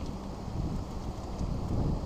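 Low, steady rumble of wind buffeting a clip-on microphone.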